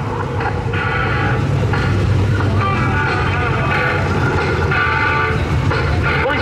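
Super sedan race car engine rumbling at low speed as the car rolls along, with a higher-pitched sound coming and going about once a second.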